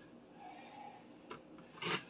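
Celery stalks being gathered and shifted on a plastic cutting board, a soft rubbing and scraping, then a knife cutting into the celery near the end.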